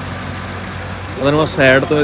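A Mahindra Scorpio-N's engine running with a steady low hum while the SUV rolls slowly. A man's voice cuts in near the end.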